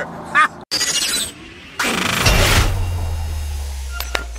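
Logo-intro sound effect: a short rush of noise, then, about two seconds in, a louder crash-like hit with a deep boom that fades out slowly. A man's brief laugh comes just before it.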